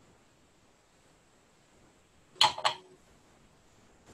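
Paintbrush tapping on a ceramic palette plate while picking up paint: two quick, sharp clicks about a third of a second apart, about halfway through an otherwise quiet stretch.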